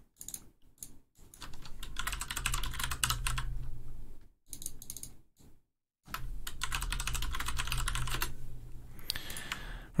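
Fast typing on a computer keyboard in two runs of a few seconds each, with a few separate clicks before and between them.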